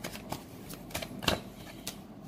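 Tarot cards being shuffled by hand: a handful of separate sharp clicks and snaps of the cards.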